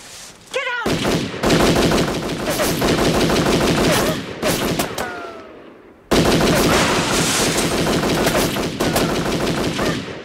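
Automatic gunfire in two long, rapid bursts: the first starts about a second in and lasts about three seconds, and the second starts about six seconds in.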